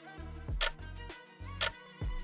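Countdown-timer sound effect: a sharp tick about once a second, twice here, over background music with a low pulsing beat.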